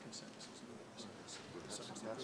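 Low, murmured conversation among a few people, with short scratchy strokes of a pen writing on paper.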